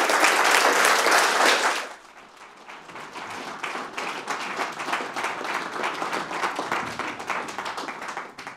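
Audience applauding. The clapping is loud for about two seconds, then drops to quieter clapping that fades out near the end.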